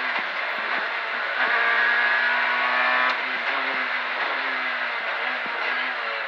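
Proton Satria S2000 rally car's naturally aspirated four-cylinder engine heard from inside the cabin, revving hard under acceleration with the pitch climbing, then dropping sharply about three seconds in at a gear change, with short knocks from the car running over the road.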